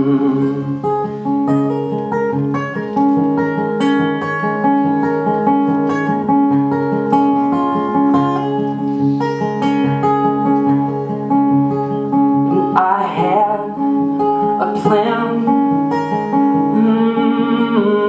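Acoustic guitar played live as an instrumental passage between verses: a steady, repeating pattern of picked notes.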